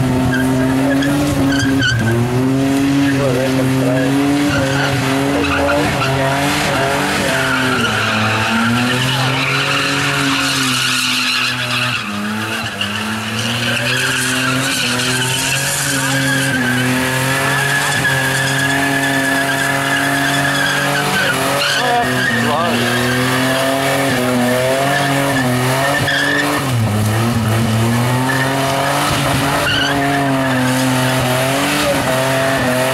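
Holden VS Calais doing a burnout: its engine is held at high revs while the rear tyres spin and squeal. The revs dip briefly about twelve seconds in and again near the end.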